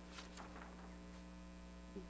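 Faint, steady low electrical mains hum under quiet room tone, with a couple of faint brief ticks near the start.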